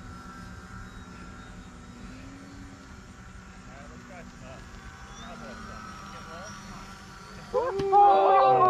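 Faint, steady drone of a small electric RC airplane's motor and propeller in flight, its pitch wavering slightly. Loud talking breaks in just before the end.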